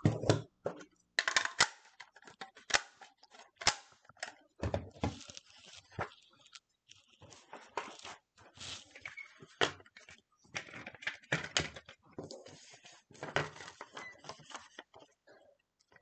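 Sheets of cardstock rustling and sliding while craft tools (a border punch and a paper trimmer) click and knock against the tabletop as they are picked up and set down, in irregular short clicks and brief rustles.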